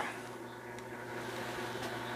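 Quiet room tone: a faint steady hum with light hiss, and one or two very faint ticks.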